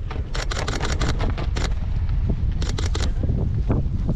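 Wind buffeting the microphone in a heavy, steady low rumble, broken by two quick runs of sharp crackles, the first about half a second in and the second shortly before the end.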